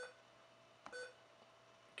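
Two short electronic beeps about a second apart from the Soundstream VR-931nb receiver's touchscreen key buzzer, confirming taps on its on-screen buttons.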